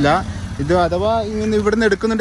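A person talking steadily, with a low steady hum underneath.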